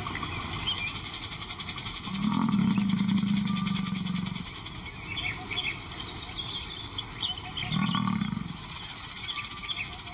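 A lion calling low: one long call of about two seconds, then a shorter one near the end, with birds chirping in the background.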